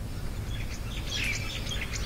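Small birds chirping outdoors: a run of short, high chirps beginning about half a second in, over a steady low background rumble.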